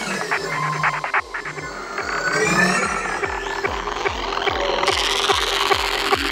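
Electronic trance music: clicking percussion, then a steady kick-drum beat enters about a second in under gliding synth sounds.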